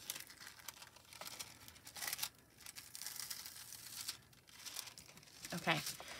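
Thin heat-transfer foil being peeled off foiled cardstock and handled, a crinkling, tearing rustle of metallic film that comes in stretches.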